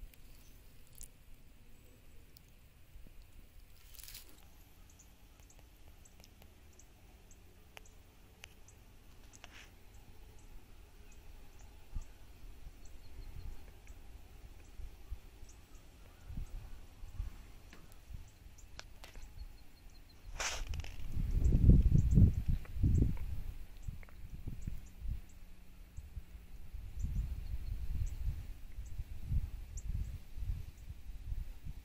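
Quiet outdoor ambience with scattered faint high ticks. About twenty seconds in comes a sharp click, followed by bursts of low rumbling on the microphone, loudest just after the click and again near the end.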